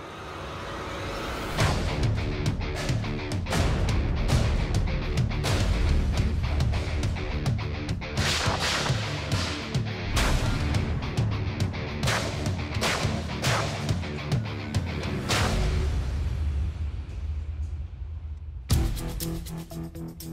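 Dramatic background music with many sharp metallic impacts at an irregular pace: a large forged knife stabbing and chopping into galvanized steel trash cans in a blade strength test. The music changes abruptly near the end.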